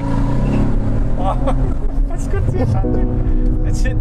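Car engine accelerating hard at full throttle, heard from inside the cabin, with music playing over it.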